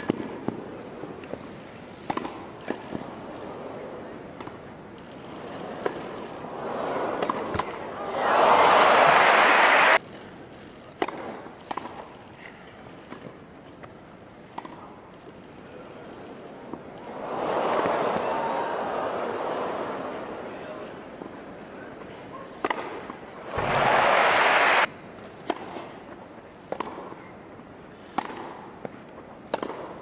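Tennis balls struck by rackets in grass-court rallies, a string of sharp pops. Crowd applause and cheering break out loudly twice, each cut off abruptly, with a softer swell of crowd noise between them.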